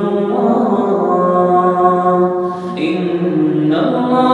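Melodic Quran recitation in tajweed style by a solo voice, with long drawn-out held notes. The voice dips briefly about two and a half seconds in, then starts a new phrase.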